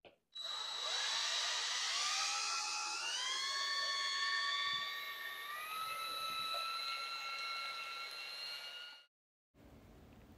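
Cordless drill spinning a mixing paddle through two-part urethane foam in a plastic cup: a steady motor whine that steps up in pitch twice, about three and five and a half seconds in, then stops near the end.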